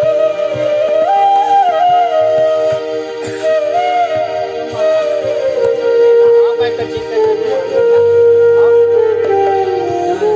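Bansuri (Indian bamboo transverse flute) playing a slow devotional melody with sliding bends between notes, over a steady held drone; in the second half it settles onto a long, lower sustained note.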